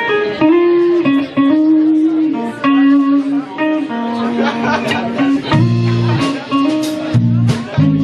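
Live band playing an instrumental passage: guitars, bass and drums under a melody of long held notes from two saxophones. The low end and drum hits grow fuller about five and a half seconds in.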